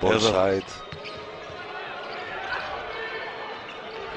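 Basketball arena ambience: a steady crowd noise with a ball being dribbled on the hardwood court during live play. A commentator's voice is heard briefly at the very start.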